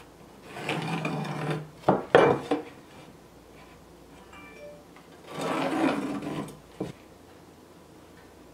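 A metal speed square scraped and slid across rough-sawn boards, with pencil marking, in two spells of about a second each. Sharp knocks of wood come around two seconds in, and a single click near the end.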